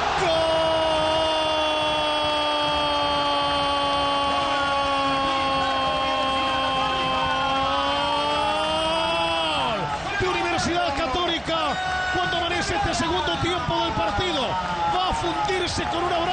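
Football commentator's long held goal cry, a single sustained note of about ten seconds that sags slightly and drops away at the end, over stadium crowd noise. Quick excited shouting follows.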